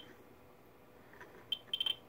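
Ludlum Model 14C Geiger counter's speaker giving short, high clicks, one for each count from its internal high-range Geiger-Müller tube held against a uranium ore sample. There is one click, then a second and a half with hardly any, then a quick run of about five near the end. The sparse count rate shows the small high-range tube picks up only a little of the sample.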